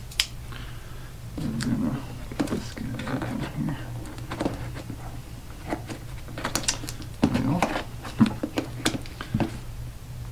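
A small plastic safety box cutter scraping and picking along packing tape on a cardboard box, with irregular clicks, taps and cardboard rustles; the cutter is not getting through the tape.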